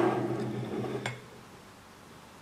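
A man's drawn-out hesitation sound, a held vowel at the end of a trailing sentence, fading out about a second in; then quiet room tone.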